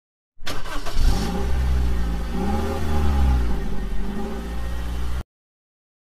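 A car engine starting and revving, its pitch rising and falling twice, then cutting off suddenly near the end.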